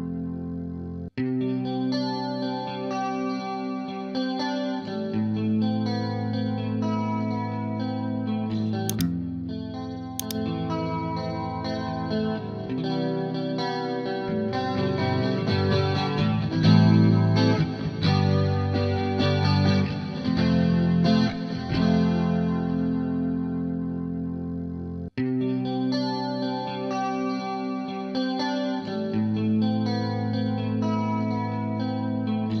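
A clean electric guitar recording playing back, its dry track blended with a parallel-compressed copy of itself. The playback cuts out for an instant about a second in and again about 25 seconds in, as a loop restarts.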